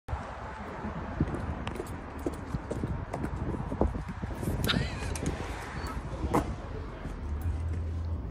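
Footsteps and handling clicks as an aluminium-framed glass door is pulled open, with a brief high squeak about halfway through and a sharp knock a little later.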